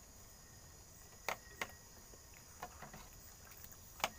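A steady, high-pitched insect chorus, with two sharp clicks about a second and a half in and a few fainter clicks near the three-second mark.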